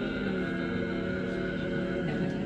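A barbershop quartet of four male voices singing a cappella, holding one long chord in close harmony that breaks off near the end.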